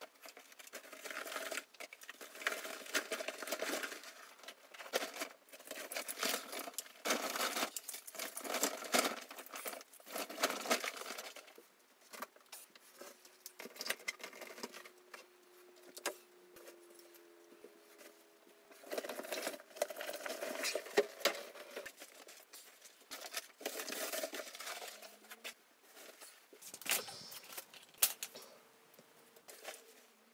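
Rustling and clattering as diving gear, hoses and clothing are picked up and moved around, in irregular bursts with a quieter stretch near the middle.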